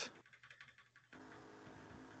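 Near silence: faint room tone over a video call, with a few faint keyboard clicks in the first second.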